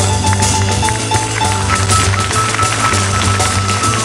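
Live modern jazz by a quintet of saxophone, trumpet/flugelhorn, piano, double bass and drums: the bass walks steadily under busy cymbal and drum work, and a horn holds one long high note through the second half.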